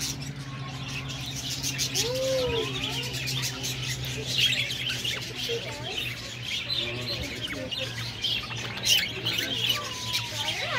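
A flock of budgerigars chirping and chattering, many quick high chirps overlapping without a break, over a steady low hum.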